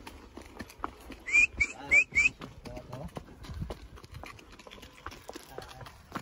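A horse's hooves stepping on a dirt track, with faint scattered clicks. About a second in come four short, rising, high-pitched calls in quick succession, the loudest sounds here.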